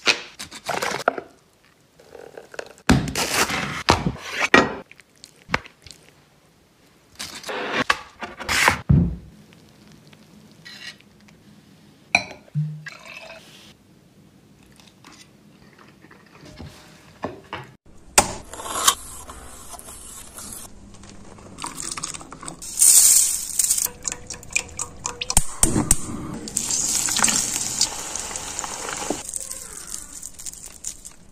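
Close-miked kitchen sounds: a run of separate knocks and clinks of utensils and cookware over the first several seconds. After a quieter stretch, a denser noisy run of food sounds follows in the second half.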